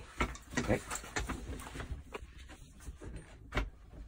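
Metal tools and a saildrive gear-shaft assembly being handled in a bench vise: scattered clicks and knocks, with one sharper knock near the end.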